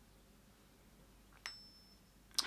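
Near silence, then about one and a half seconds in a single light clink with a brief high ring as a makeup brush knocks against a metal ear weight.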